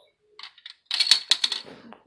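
Plastic Connect Four discs clicking and clattering: a few light clicks, then a quick rattle of clicks about a second in.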